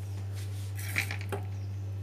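A few light clinks and taps on a ceramic plate as a hand presses a sandwich down on it. The sharpest clink comes about a second in, with a steady low hum underneath.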